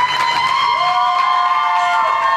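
Singers holding the long final note of a pop song. One voice holds a steady high note and a second voice joins on a lower held note under a second in, with the backing music already stopped.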